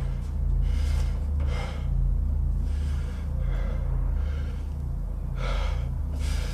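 A man breathing hard with effort, with three heavy, gasping breaths about a second in, around three and a half seconds in and near the end, over a low, steady droning music score.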